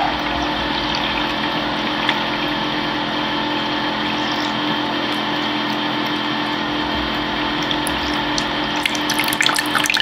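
SlimPure countertop reverse-osmosis water dispenser flushing its tank: its pump hums steadily while a thin stream of water pours from the spout into a plastic measuring cup.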